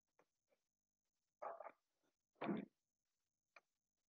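Near silence, broken by two brief faint sounds about one and a half and two and a half seconds in.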